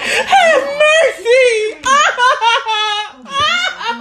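A high-pitched voice wailing and shrieking in a string of drawn-out cries whose pitch wavers up and down, loud and broken by short gaps.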